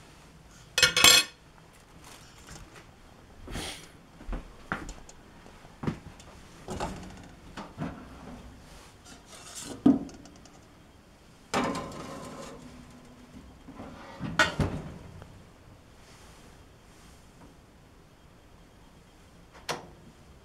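Metal mixing bowl of batter clattering and knocking as it is handled and set into a small toaster oven, with metal-on-metal clanks from the oven rack and door. The clatters come one at a time, loudest about a second in and again near ten seconds, with a short click near the end.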